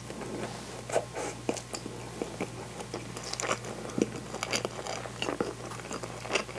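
Close-miked chewing and biting of natto rice, with frequent short sharp clicks; the loudest come about a second in and about four seconds in.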